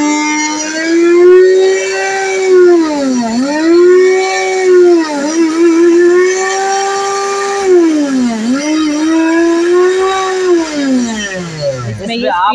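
Silver Crest blender motor running with an empty jar: a loud, steady whine whose pitch dips and climbs back twice, then winds down to a stop near the end.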